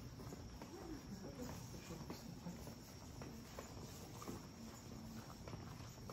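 Insects trilling in a faint, steady, high-pitched chorus on a late-summer evening, with scattered light footsteps on stone paving.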